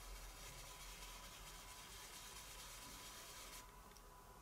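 Very faint, soft rubbing of a stencil brush's bristles swirling ink onto card stock.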